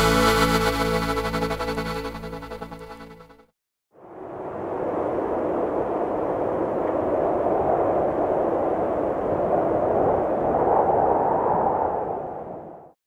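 A norteño band's closing chord, with accordion and bajo sexto, held and dying away over about three seconds. After a moment of silence, a steady rushing noise comes in and holds at an even level.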